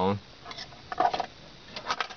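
A man's speech trailing off, then a quiet pause with a few faint clicks and rustles of the camera being handled as it pans.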